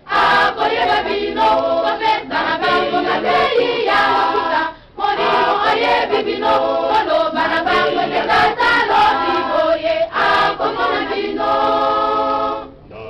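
A choir singing, with a short pause about five seconds in.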